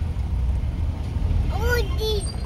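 Steady low rumble of a car, heard from inside the cabin, with a brief voiced sound near the end.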